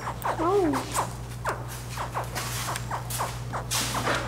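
A baby alligator's short, wavering chirp about half a second in, over scattered rustling and clicking as eggshells and damp nesting material are handled among the hatchlings. A steady low hum runs underneath.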